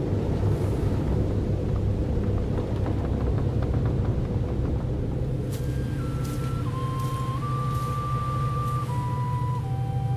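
A steady low rumbling drone. About halfway through, a wooden flute begins a slow melody of long held notes that step downward in pitch.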